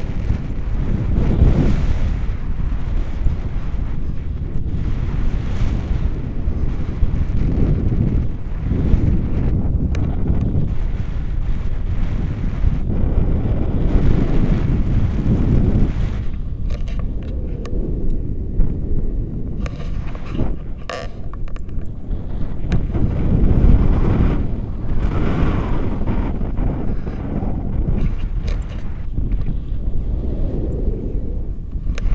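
Airflow buffeting a camera microphone during a paraglider flight: a loud, low rumble that swells and eases in gusts every few seconds.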